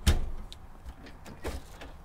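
Knocks and clicks of a hand working caravan kitchen appliance doors: a sharp knock at the start, a light click about half a second in, and a second knock about a second and a half in as the fridge door is pulled open.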